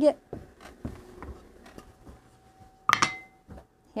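Light knocks and handling noises of objects being moved about on a work table, then one sharp clink about three seconds in that rings briefly.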